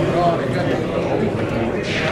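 Crowd of spectators chattering, many voices overlapping in a large indoor hall, with a short sharp click near the end.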